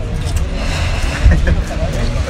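Street ambience: a steady low rumble of road traffic with indistinct voices of passersby.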